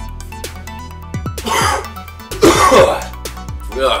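A man coughing and clearing his throat in two harsh bursts, about a second and a half and two and a half seconds in, the second louder, after swallowing a milk and relish mixture. Background music with a steady electronic beat runs underneath.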